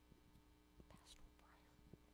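Near silence: room tone with a low steady hum, a few faint small knocks, and a brief soft hiss about a second in.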